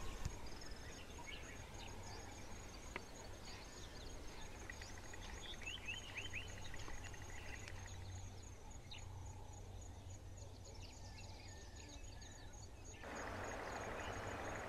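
Faint natural ambience: birds calling with short chirps and whistles over an insect's high, evenly repeated chirp. About a second before the end it gives way to a louder, steady outdoor hiss.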